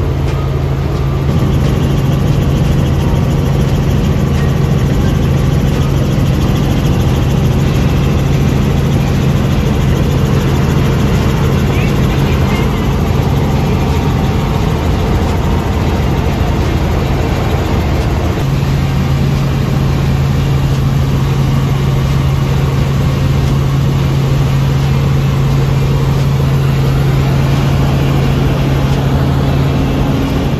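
Helicopter engine and rotor noise heard from inside the cabin in flight: a loud, steady drone with a low hum that fades for a few seconds about halfway through and then returns.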